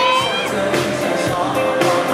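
Live pop band performance: a male singer's voice over the band, with bass guitar, heard from the audience.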